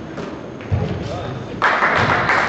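Basketball thudding on a hardwood gym floor, the loudest thud under a second in. Near the end a louder, noisy rush sets in suddenly and carries on.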